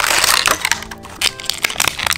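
A clear plastic blister pack is torn off its cardboard backing by hand. It crackles and crunches, loudest in the first half-second, then gives off scattered sharp crackles as the plastic is flexed.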